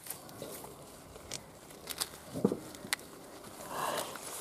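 Quiet rustling and a few light crackles of a green corn husk being pulled back by gloved hands from a young ear of corn.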